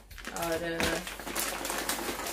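Plastic clothing packet crinkling and rustling in quick crackles as a folded suit is pulled out of it, with one drawn-out spoken word over it.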